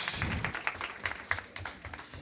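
Audience applauding, the clapping dying away toward the end.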